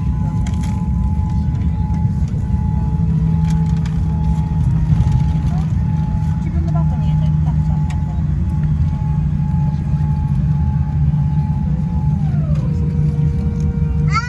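Cabin noise of a Boeing 787-10 rolling on the ground after landing: a steady low rumble with a thin steady whine that glides down in pitch and settles lower about twelve seconds in.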